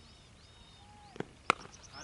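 A soft knock, then the sharp crack of a cricket bat striking the ball about one and a half seconds in, with faint birdsong behind.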